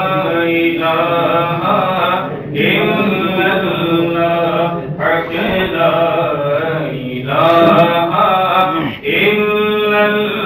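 A man's voice chanting an Islamic devotional song in long, drawn-out melodic phrases, with short breaks for breath about every two to four seconds.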